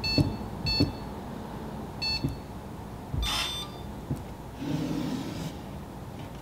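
Electronic beeps from an Arduino keypad safe as keys are pressed: three short, high beeps, then a longer, harsher beep about three seconds in.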